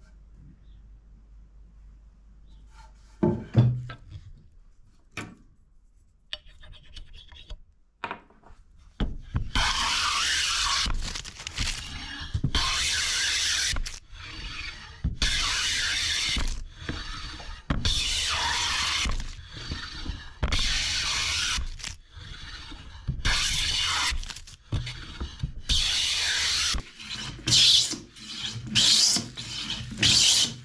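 A hand plane taking long strokes along a softwood board, about a dozen rasping strokes with short pauses between them, starting about nine seconds in. The board is being planed flat for a face-to-face glue joint. A single thump comes about three seconds in.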